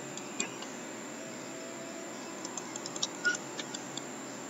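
Faint clicks of a computer mouse over low room hiss: one about half a second in, then a scattering of light clicks near the end.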